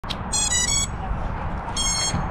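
Short electronic beeps from FPV drone gear powering up. Three quick tones of differing pitch come in the first second, then a longer single tone near the end, over a low steady rumble.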